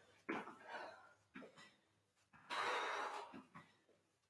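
A woman breathing hard from the exertion of a fast hopping exercise: a few short, quiet breaths, then one longer exhale about two and a half seconds in.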